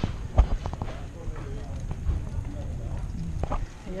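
A pushed stroller rolling over street paving, heard through a camera riding on it: low rumbling with light clicks, and a sharp knock about half a second in.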